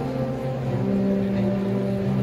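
Instrumental music with long held notes, the chord changing a little way in.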